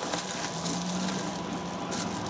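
Bubble-wrap packaging rustling and crinkling as it is pulled off a circuit board by hand, over a faint low hum.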